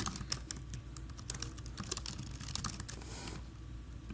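Typing on a computer keyboard: a quick, irregular run of keystroke clicks as a line of code is entered.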